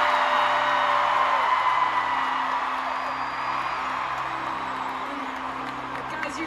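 Stadium crowd of thousands cheering and screaming, loudest at the start and slowly dying away, over a soft held musical chord from the PA.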